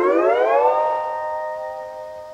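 Fender Stringmaster double-neck steel guitar: a chord slid upward with the steel bar in under a second, then held and left to ring, slowly fading.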